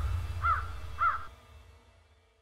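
A crow cawing, two calls about half a second apart, over a low rumble that fades out.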